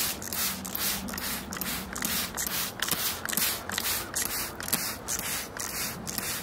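Hand trigger spray bottle squirting soapy water in quick repeated pumps, about three squirts a second.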